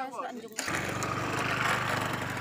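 A man's voice briefly, then from about half a second in a loud, steady small-engine drone with a fast pulse in it.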